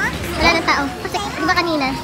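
Background voices, several of them high-pitched, talking and calling out in the open air.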